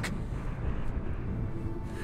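Quiet dramatic film score over a deep, steady rumble of the erupting volcano, with a held note entering near the end.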